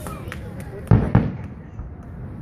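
Two aerial firework shells bursting about a quarter second apart near the middle, sharp booms with a short echo, after a few fainter pops.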